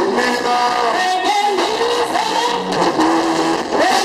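Live band playing, with an electric guitar lead line of bending, sliding notes over the band.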